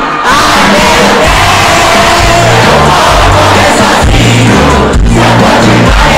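Live pop concert music through the PA, with a large crowd's voices loud over it. A pulsing bass line comes in about a second in.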